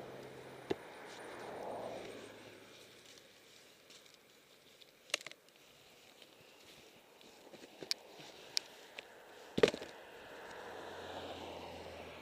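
Traffic passing on a highway: tyre and engine noise swells and fades near the start and again near the end. In between come a few sharp knocks and clicks, the loudest a little before the end.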